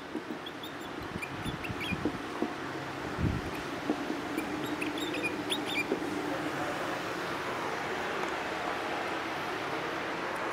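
Dry-erase marker squeaking on a whiteboard in short strokes as words are written, in a few clusters of brief high squeaks over steady room noise.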